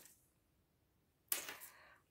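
Mostly quiet, then a brief sharp rustle about two-thirds of the way in, fading within half a second, as a crocheted hat and tape measure are handled on a tabletop.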